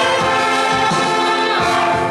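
A church band of violins, violas, trumpets, trombones, tuba and clarinets playing a hymn: held chords over a steady low-note beat about every 0.7 s.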